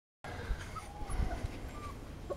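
Podenco puppies whimpering faintly: a few short, high whines that bend in pitch, with some soft low thumps.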